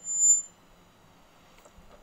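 A brief, steady, very high-pitched squeal, about half a second long at the very start, then quiet background.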